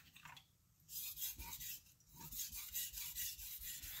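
Steel knife blade scraping back and forth on a wet Naniwa Chosera 3000-grit whetstone in a run of sharpening strokes, starting about a second in after a brief quiet. The strokes work the edge on the finer stone to raise a fine burr.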